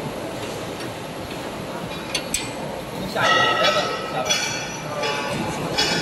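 Steady workshop background noise with a few light metallic clicks about two seconds in, then a voice in the background from about three seconds in.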